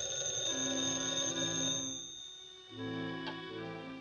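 A telephone bell ringing over orchestral film music, stopping about two seconds in; the music carries on with sustained chords.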